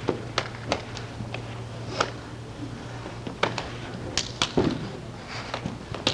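Fighting sticks clacking together in about a dozen sharp, irregularly spaced knocks as two sparring partners tap rather than strike hard, over a steady low hum.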